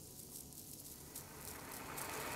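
Faint, rough hissing rumble of something approaching from far off, a cartoon sound effect that slowly grows louder toward the end.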